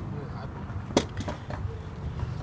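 A single sharp knock on a skateboard about a second in, followed by two fainter clicks, over a low rumble of wind on the microphone.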